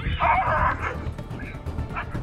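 A dog barking in a loud burst for most of the first second, then fainter calls, during an attack on a child, over background music.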